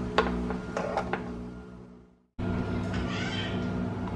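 A metal ladle clinking lightly against a glass baking dish of thin blended tomato salsa, three clinks in the first second or so, over a steady low hum. The sound fades to a moment of silence about two seconds in, then the hum returns with a brief higher warbling sound a second later.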